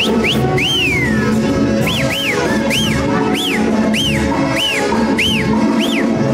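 Festive dance music from a band, with loud rising-and-falling whistles over it, about two a second.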